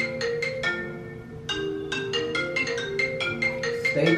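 Background music: a light tune of short struck mallet-percussion notes in a marimba-like sound, thinning out briefly about a second in.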